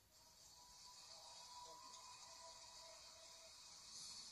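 Faint audience applause building up, heard through a television's speaker, with faint steady tones underneath.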